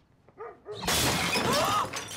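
A baseball bat smashing something breakable: a loud crash of shattering glass or ceramic that starts a little under a second in and lasts about a second.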